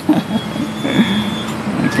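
A diesel-hauled local passenger train standing at the platform, its engines running with a steady low hum, with a few short voices over it.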